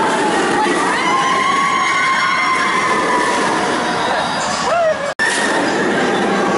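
Steel roller coaster train running fast along its track with riders screaming, one long scream held for several seconds. The sound cuts off abruptly near the end.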